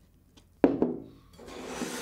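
Food containers handled on a wooden tabletop: two quick, sharp knocks a little before the middle, then a steady scraping rub for the last half second or so.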